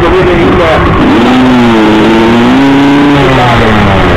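Off-road motorcycle engine revving high. It holds its pitch for a few seconds, rises slightly, then drops away near the end.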